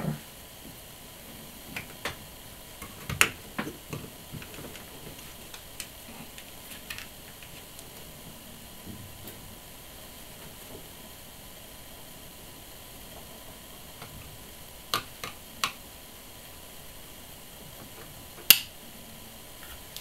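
Small plastic clicks and taps from the SJ4000 action camera's housing parts being handled and pressed together, scattered and irregular, with the loudest click near the end. A steady faint hiss lies between them.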